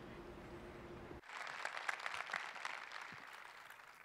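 An audience applauding, starting abruptly about a second in and slowly thinning out toward the end. Before it, a steady hum.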